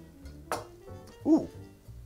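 A man's brief exclamation, "ooh!", with a pitch that rises and falls, over soft background music; a short sharp sound comes about half a second in.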